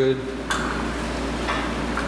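Spin-on oil filter on a Harley-Davidson Dyna being unscrewed by hand from its mount, with light metallic clicks about half a second and a second and a half in.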